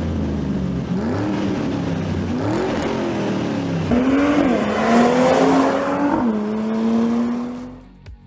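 Sound-effect sports car engine in an intro sting, revving up and down several times, then one longer pull with heavy hiss. It settles into a steady held note that fades out near the end.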